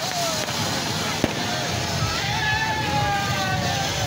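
Ground fountain fireworks spraying sparks with a steady hiss, and one sharp crack about a second in.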